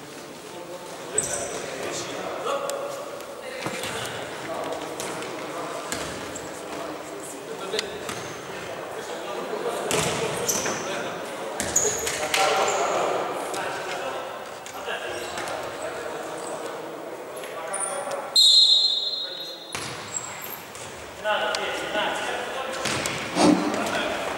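Indoor futsal play echoing in a large gym hall: ball kicks and bounces, brief shoe squeaks on the wooden floor, and players' shouts. About two-thirds through comes the loudest sound, a high held tone lasting just over a second.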